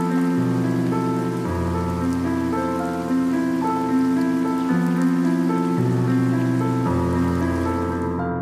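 Steady rain falling, layered with slow, sustained keyboard music with deep bass notes changing every second or so. The rain cuts off abruptly right at the end, leaving the music alone.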